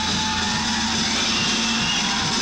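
Heavy metal band playing live, with distorted electric guitar holding a steady sustained tone.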